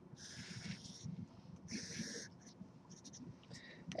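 Sharpie felt-tip marker drawn across paper in two long, faint strokes, about a second apart, as two axis lines are drawn.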